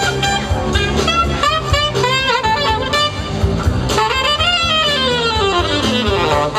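Live R&B horn band playing, with a saxophone leading in a solo line that bends and sweeps up and down in pitch over bass, keys and drums.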